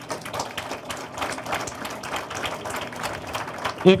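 Audience applauding, many hands clapping steadily; the clapping gives way to a man's voice on a microphone at the very end.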